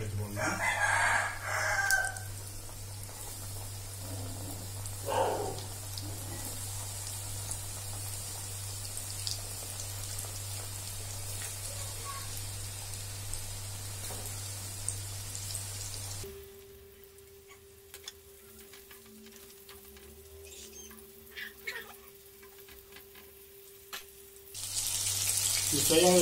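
Battered chicken pieces deep-frying in hot oil, a steady sizzle. A brief loud call comes about a second in and another around five seconds. For several seconds in the second half the sizzle gives way to a quieter steady hum, and the sizzling returns near the end.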